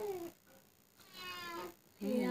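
Two short animal cries, like a cat's meow. The first falls in pitch at the very start, and the second comes about a second in.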